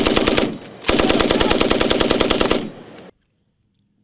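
Machine gun firing suppressive fire in long automatic bursts, the shots coming rapidly and evenly. A burst ends about half a second in, and a second burst of nearly two seconds follows. The sound cuts off sharply about three seconds in.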